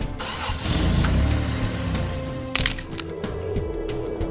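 Cartoon sound effect of a monster truck engine rumbling as the truck drives in, over background music, with a short sharp burst of noise about two and a half seconds in.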